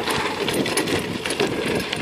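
Bicycle rolling along, a steady fast rattle of clicks from the freewheel and chain over road noise.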